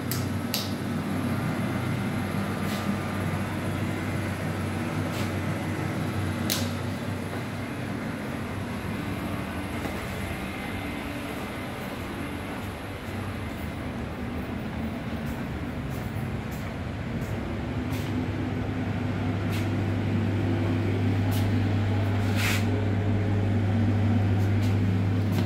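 Steady low hum of central air conditioning, with a few faint clicks. The hum grows louder in the last few seconds.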